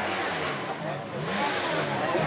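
Dirt bike engines revving, their pitch rising and falling twice, at a motocross track.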